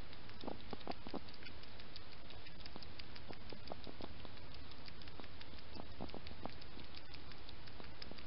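A hedgehog making small irregular clicking mouth sounds in short clusters as it eats or drinks with its head down, close to a trail camera, over the camera's steady hiss.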